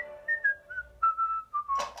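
A single clear whistle. It swoops up and then falls in a run of short, separate notes, dropping about an octave over two seconds.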